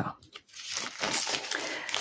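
Sheets of textured card paper rustling and sliding against each other as they are handled, starting about half a second in.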